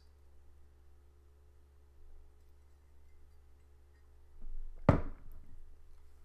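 Steady low hum with faint thin tones, broken about five seconds in by one sharp thump, the loudest sound here.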